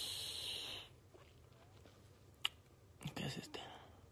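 A man's long breathy exhale through pursed lips, a hiss that stops about a second in. A single click comes later, then a brief whispered vocal sound.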